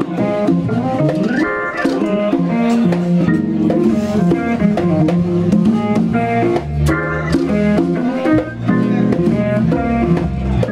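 Live blues-jazz band: electric guitar playing lead lines over Hammond organ, with congas and percussion keeping the beat. A bent guitar note rises about a second and a half in.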